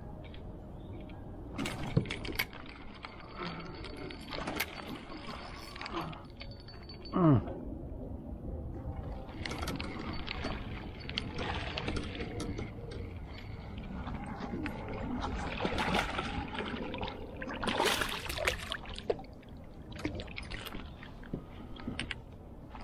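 Water splashing and sloshing around a plastic kayak, in irregular bursts as a paddle works the water and a hooked largemouth bass is brought aboard, with knocks of gear against the hull. The loudest of these is one sharp knock about seven seconds in.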